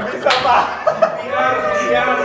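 A sharp slap about a third of a second in, amid men laughing, followed by a man's drawn-out yell.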